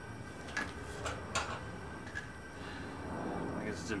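A hot 1075 carbon-steel blade held in tongs during an edge quench in a galvanized bucket of quench oil: a few sharp clicks, three close together about a second in, over a steady low hum.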